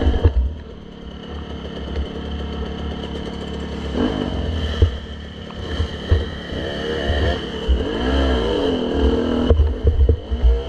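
Dirt bike engines revving, their pitch rising and falling several times as the bikes ride a rough trail, over a constant low rumble with occasional clattering knocks.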